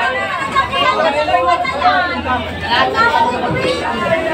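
Several people talking at once, a busy chatter of voices with no one voice standing out.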